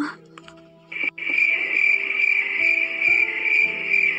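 Crickets chirping steadily in a high, even trill that comes in about a second in, over soft sustained background music.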